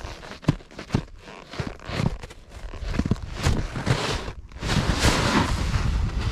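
Snowboard boot shifting and twisting in a Burton Step On binding, with irregular crunches and scrapes of snow and gear underfoot. No binding click is heard.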